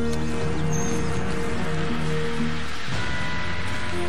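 Background music score with long, sustained held notes that shift to a new chord about three seconds in.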